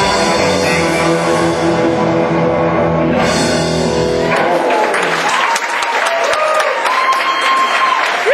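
Live rock band with electric guitar and drums holding the song's final chord, which cuts off about halfway through. Audience applause and cheering follow.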